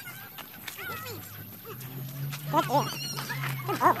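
Three short high-pitched vocal cries, rising and falling in pitch, about a second and a half apart, over a low steady hum.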